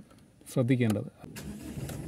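Chevrolet Tavera engine started with the key: a click or two, then the engine catches and settles into a steady low idle about one and a half seconds in.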